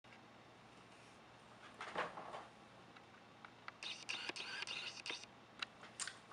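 Faint rustling of clothing and upholstery with a few scattered light knocks and clicks as a person sits down in a fabric-covered desk chair, the rustle longest just past the middle.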